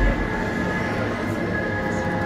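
Low, steady rumbling drone with a thin, steady high tone held above it: the ambient soundtrack of an immersive exhibition hall.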